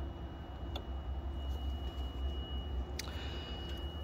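Two light clicks from a screwdriver tip flicking DIP switches on a VRF outdoor unit's control board to set test mode, one shortly after the start and one near the end. Under them runs a steady low hum with a thin high whine.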